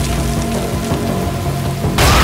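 Steady heavy rain falling, with film score music holding sustained notes underneath.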